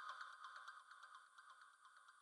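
Near silence: a faint steady high electronic tone, with faint ticks dying away in the first second.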